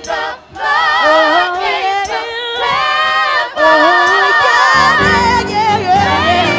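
Gospel praise team singing together into microphones, several voices in harmony with strong vibrato over little accompaniment. A low sustained accompaniment comes in about five seconds in.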